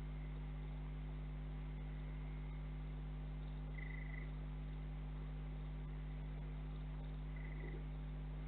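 Steady low electrical hum with a faint hiss behind it, and two short high-pitched calls from a small night animal, one about four seconds in and one near the end.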